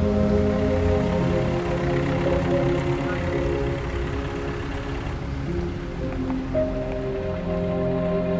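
Slow background music with sustained tones. A steady hiss of rain is laid over it for the first five seconds and cuts off abruptly.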